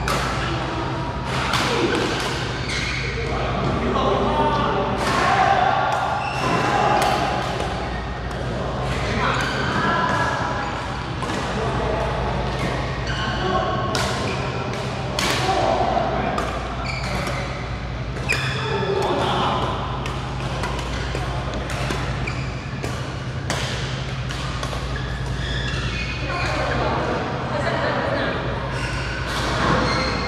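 Badminton rackets striking shuttlecocks in rallies on several courts, a string of sharp cracks often about a second apart, echoing in a large hall. Voices talk over a steady low hum.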